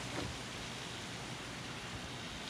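Steady low outdoor background hiss with no distinct events.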